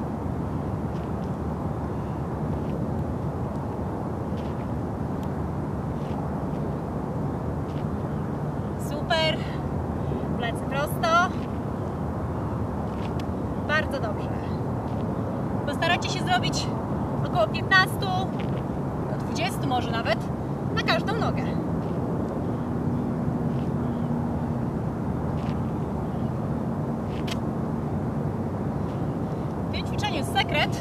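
Steady low rumble of distant city traffic, with a few short snatches of voice scattered through the middle. A faint steady drone joins the rumble about two-thirds of the way in.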